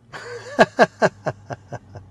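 A man laughing in a quick run of about seven short bursts, each dropping in pitch.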